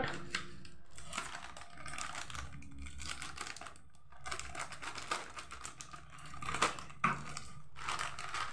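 Scissors cutting across the top of a crinkly plastic snack packet, the wrapper crackling and rustling in many small irregular clicks as it is cut and handled.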